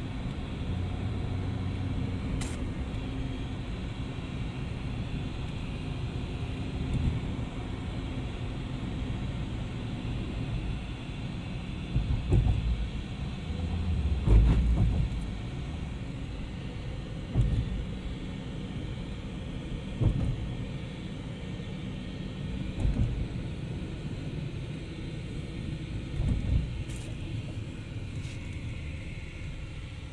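Steady low rumble of a car's tyres and engine heard from inside the cabin while driving, broken by several short, louder low thumps from about halfway through.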